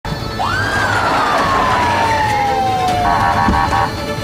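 Police car siren giving one wail that rises quickly and falls slowly, followed by a short run of rapid chirps near the end.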